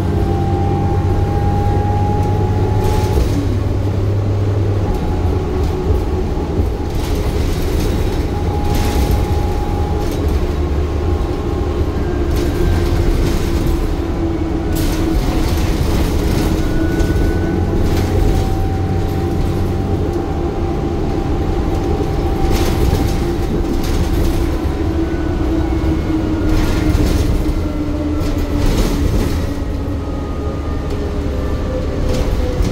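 Cabin ride noise of a 2008 New Flyer C40LFR natural-gas transit bus under way: a steady low drone from the engine and drivetrain with a whine that rises and falls in pitch as the bus speeds up and slows. Scattered knocks and rattles from the body and fittings come through now and then.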